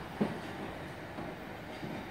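Steady, distant running noise of an electric multiple-unit train in a tunnel down the line. There is one brief, short sound just after the start.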